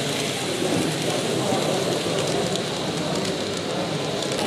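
Indistinct background chatter of a crowd in a large hall, with faint overlapping voices and no clear words over a steady hiss.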